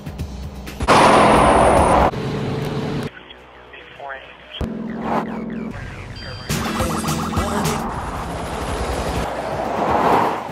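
Quick-cut intro montage sound: music mixed with short snatches of voice and road sound, changing abruptly every second or two. A loud rushing noise burst lasts about a second, starting about a second in.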